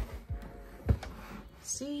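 A single soft thump about a second in as a hand handles the manga volumes in their cardboard box set, over quiet background music.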